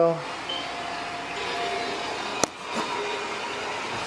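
Steady background noise in a room, with one sharp click about two and a half seconds in.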